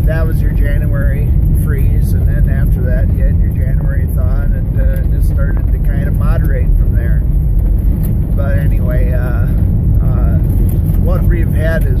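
Road noise inside a car's cabin on a gravel road: a steady low rumble of tyres on gravel and the engine, with a man's voice talking over it.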